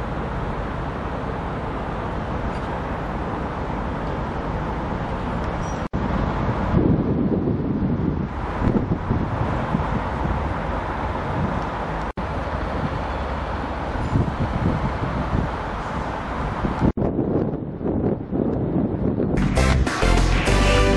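Wind buffeting the microphone over outdoor street noise, gusting louder from about a third of the way in, with three brief dropouts. Music with a beat starts just before the end.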